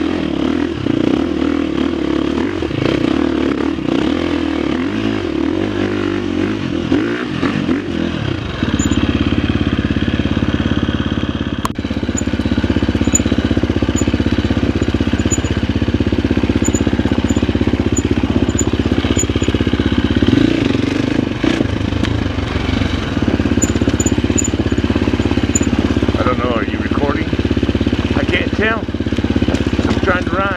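A Husqvarna FX350 dirt bike's four-stroke single-cylinder engine running. It is uneven for the first eight seconds or so, then settles into a steadier, louder note as the bike is ridden.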